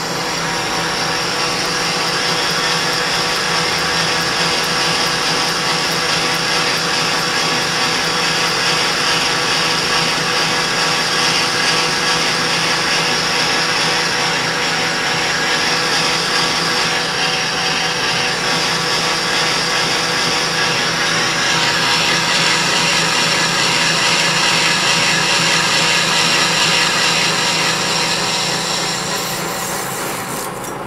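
Metal lathe taking a steady roughing cut, 100 thousandths deep, on the outside diameter of a locking collar blank: the spinning chuck and the cutting tool running under load as chips come off. The cut comes in about a second in, gets harsher in its upper part about two-thirds of the way through, and eases off just before the end.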